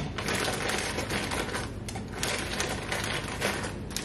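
Plastic bag of frozen peaches crinkling as it is opened and handled, with many small clicks as the frozen pieces shift inside.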